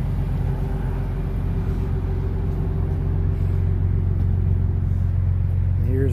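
A vehicle engine idling: a steady low rumble and hum that grows slightly louder near the end.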